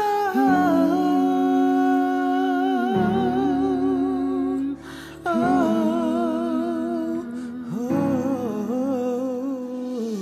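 Two women's voices singing a wordless, hummed passage in harmony: long held notes with vibrato, with a brief break about five seconds in.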